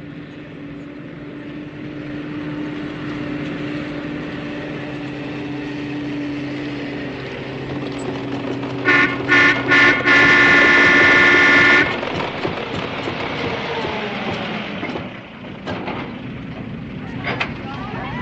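A vehicle engine runs steadily. About nine seconds in, a horn sounds two short honks and then one long honk of about two seconds, louder than everything else.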